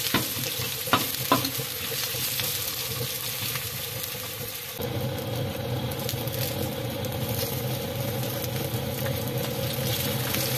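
Sliced onions sizzling as they fry in a large black pan on a wood stove, stirred by hand, with a few sharp clicks in the first second and a half. The steady sizzle changes character a little before halfway.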